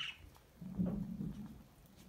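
A faint, low murmur of a person's voice, like a brief hum, starting about half a second in and lasting about a second.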